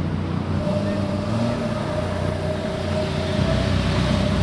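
Car engines running as cars drive slowly past one after another, with a steady tone coming in about half a second in.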